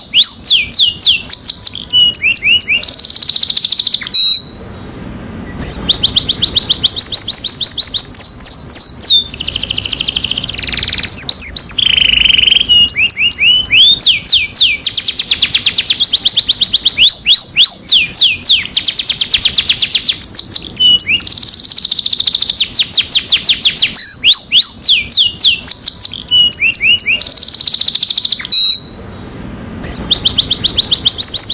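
Domestic canary singing a long song of fast, rapidly repeated trills and whistled phrases, with a short pause a few seconds in and another near the end.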